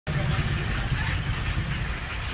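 A steady low rumble under the murmur of a small outdoor gathering.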